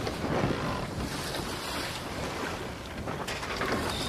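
Sea waves washing and wind blowing, the sound of a ship out on open water.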